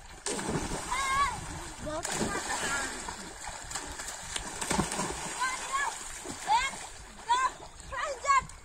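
Boys splashing in a pond as they jump in from the bank, with short high shouts and laughter that come thicker in the second half.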